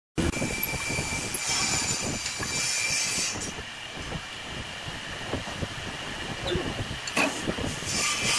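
Small wood lathe running with a steady whine and rattle that stops about three seconds in, followed by clicks, knocks and rubbing as the turned vase is twisted off the headstock spindle, with one sharp knock about seven seconds in.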